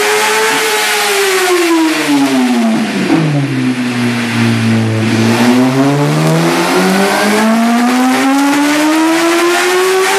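2008 Yamaha R1 inline-four engine with a Graves full race exhaust, run on a dyno. The revs fall over the first four seconds or so, then climb smoothly and steadily in a long pull up the rev range: a dyno power run.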